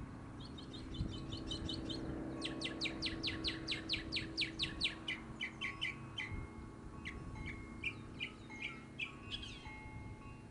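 A songbird singing: a quick run of short high notes, then a louder series of downward-sweeping notes at about four a second that slows and spreads out in the second half. A faint steady low hum lies underneath.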